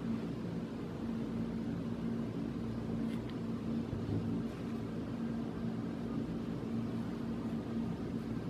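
A steady low machine hum with a faint hiss behind it, as from a running fan or other motor-driven appliance in the room, with a faint click about three seconds in.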